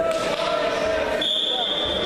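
Referee's whistle blown once, a high steady tone about a second long starting just past the middle, signalling the start of a wrestling bout, over the voices of people in the hall.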